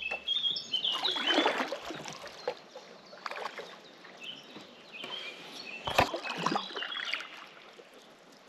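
Kayak paddle strokes dipping and splashing in calm lake water, the loudest about a second in and again around six seconds, with short high bird chirps over them.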